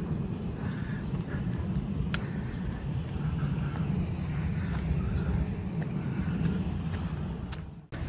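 Steady low outdoor rumble, with a few faint clicks, that drops out suddenly for a moment just before the end.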